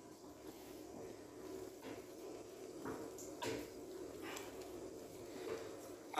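Wooden spatula stirring a thin, watery masala gravy in a kadai: faint scraping and sloshing strokes, several in a row.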